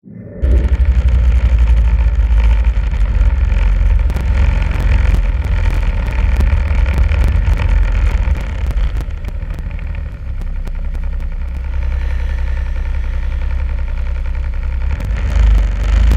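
Snowmobile engine running under way, with a heavy low rumble. It eases off for a few seconds past the middle and picks up again near the end.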